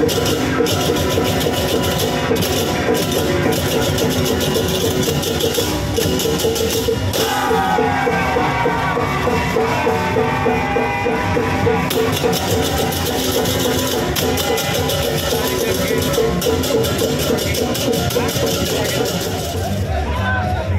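Balinese baleganjur processional gamelan playing loudly: fast crashing cymbals and drums over a quick repeating pitched pattern, with crowd voices mixed in and a stretch of shouting near the middle.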